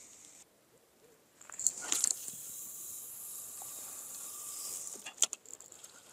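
Carp rod and reel being handled: a few clicks, then a steady high hiss of line and reel lasting about three seconds, then more clicks as it stops.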